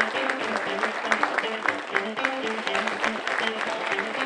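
Audience applauding over background music, a melody of short steady notes stepping from one pitch to another.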